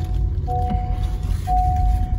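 Honda City 2020's seat-belt reminder chime: long, steady beeps of one unchanging pitch, repeating about once a second, a sign that a seat belt is unfastened. Under it runs the low, steady drone of the car moving along the road.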